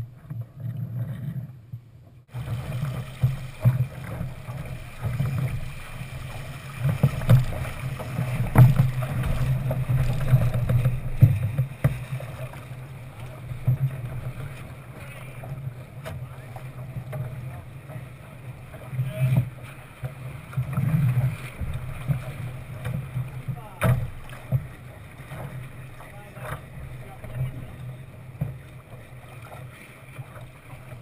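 Wind buffeting the microphone and water rushing along the hull of a Thistle dinghy under sail, a steady rumbling wash that swells and eases, with a few sharp knocks.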